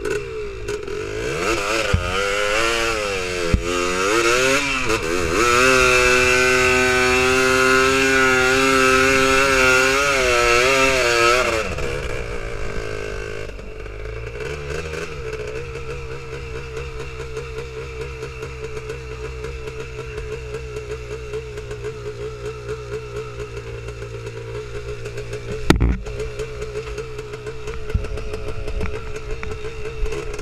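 Honda TRX250R quad's two-stroke single-cylinder engine revving up and down, then held at high revs for about six seconds before dropping back to a lower, steady run. A single sharp knock comes late on.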